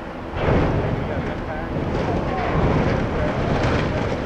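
Steady, loud rush of high river water pouring through the dam's spillway gates.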